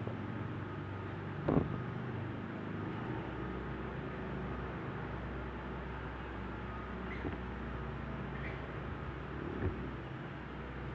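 A steady low mechanical hum, dropping slightly in pitch a few seconds in, with a single sharp knock about a second and a half in.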